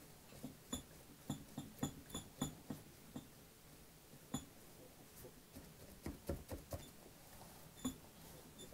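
Foam sponge brush dabbing and wiping Mod Podge onto a clock's frame: a quiet run of irregular soft taps and clicks, some with a brief high tick, in two clusters with a lull in the middle.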